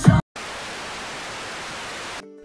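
Music cuts off abruptly, and after a brief silence a steady hiss of TV static noise follows as a transition sound effect.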